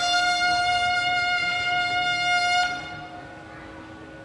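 A bugle sounding one long, steady note that cuts off about two and a half seconds in, leaving only faint background noise.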